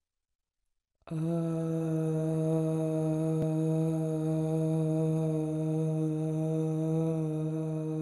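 A voice chanting one long sung "ah" on a single steady low pitch, starting suddenly about a second in and held without a break, like a mantra drone.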